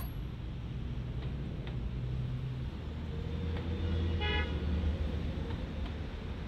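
Street traffic: vehicle engines running past in a low rumble that swells in the middle, with a brief car horn toot about four seconds in.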